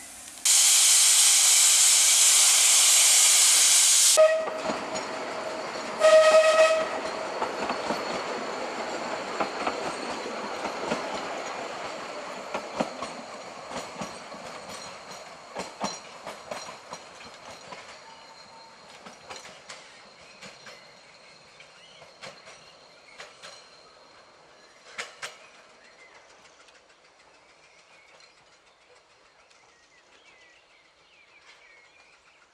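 A narrow-gauge steam locomotive gives a loud blast of steam lasting about four seconds, then a short whistle toot. The train pulls away, and its running and the clicking of wheels over rail joints fade steadily as it recedes.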